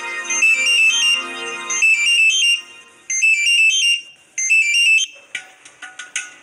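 Phone ringing: a warbling electronic ringtone in four bursts, each about a second long.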